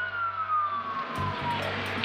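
Fire rescue truck's siren wailing, heard from inside the cab over the steady drone of the truck's engine. Its pitch slides down over about a second and a half, and a hissing noise comes in about halfway through.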